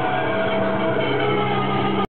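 Live rock band with electric guitars playing loudly on stage, a dense, steady wash of sound with long held notes and no singing.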